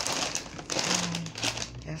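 Crinkling of a plastic potato chip bag as it is handled and turned in the hands.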